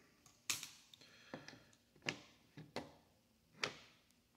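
About six sharp plastic clicks at irregular intervals from the sticks of the FX-816 P38's handheld transmitter being pushed up and down, the stick routine used to pair and calibrate the plane with the transmitter.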